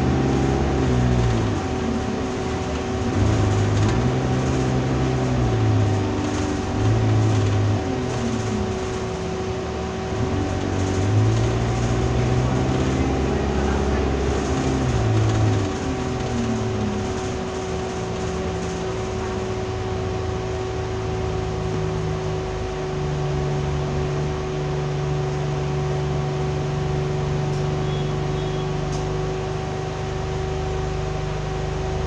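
Alexander Dennis Enviro200 bus's diesel engine and automatic gearbox heard from inside the passenger saloon. Over the first half the pitch rises and falls several times as the bus pulls away and works up through the gears, then it settles into a steady low drone. A constant whine sits over it throughout.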